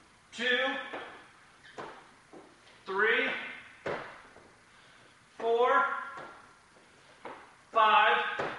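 A man counting exercise repetitions aloud, one drawn-out count about every two and a half seconds, each falling in pitch. Short light knocks come between the counts.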